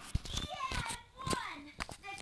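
A young child's high-pitched voice vocalising close to the microphone, with several knocks and clicks from the small camcorder being handled.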